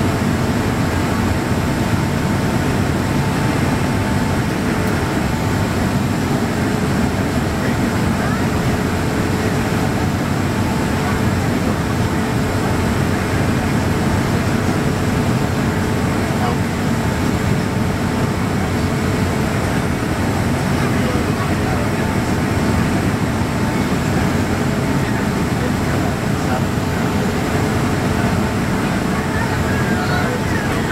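Steady cabin noise of a Boeing 767-200ER airliner on approach, heard from a window seat over the wing: engine and airflow noise with a constant hum tone running through it.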